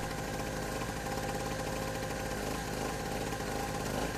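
Small two-stroke portable generator engine running at a steady speed, its throttle held by a mechanical governor.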